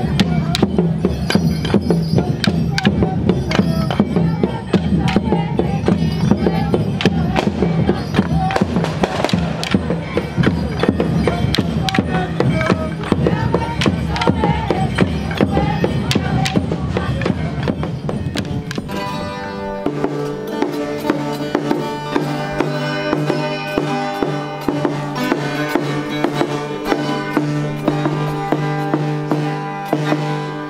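Moçambique stick dance: wooden staves clashing in a fast rhythm among rattles, percussion and voices. About two-thirds of the way through, this gives way to steady plucked guitar music.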